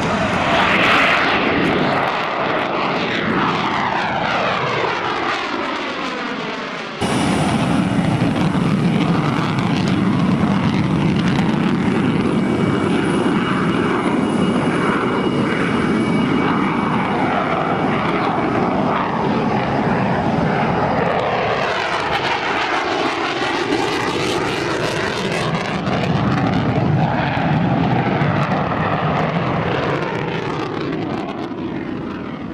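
McDonnell Douglas F-15 Eagle's twin jet engines running in afterburner during a flyby, a loud continuous roar with sweeping rise-and-fall tones as the jet passes. The sound changes abruptly about seven seconds in, and the sweeps return near the end.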